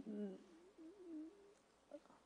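A woman's voice trailing off at the end of a word, then a faint, quavering, whimper-like vocal sound that wavers up and down and fades about halfway through: a voice choked with tears during an emotional eulogy.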